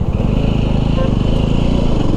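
Jawa 300's single-cylinder engine and exhaust running steadily as the motorcycle rides along, heard from the rider's seat.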